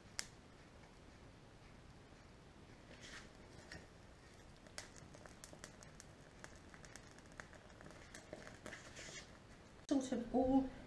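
Faint crackling and scattered small ticks from a dried seaweed 'bush' burning in a bowl of methylated spirits, with a sharper click just after the start and another about five seconds in.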